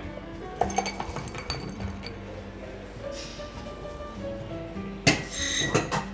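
Ice clinking and rattling as a shaken cocktail is poured from a metal shaker tin into a tall glass, with a louder rattle of ice near the end. Background music plays throughout.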